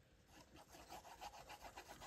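Faint, quick scratching of a plastic glue bottle's nozzle tip dragged across the back of a paper tag as glue is laid on, starting about half a second in.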